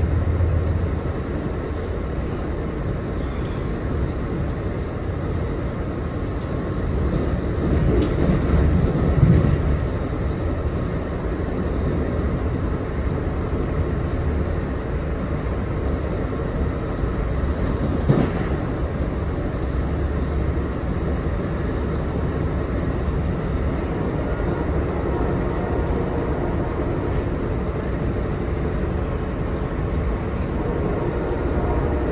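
Passenger train running at speed, heard from inside the coach: a steady rumble of wheels on rail. It swells louder around eight to nine seconds in, and there is one sharp knock near eighteen seconds.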